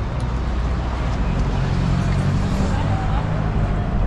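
Road traffic on a city street: vehicle engines running past in a steady low rumble, with people's voices close by.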